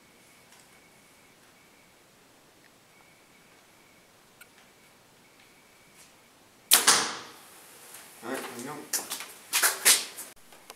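A compound bow is shot about seven seconds in, after a long, quiet hold at full draw. It makes a sharp, loud crack as the string is released, and a second hit follows a fraction of a second later as the arrow strikes the Bulldog target.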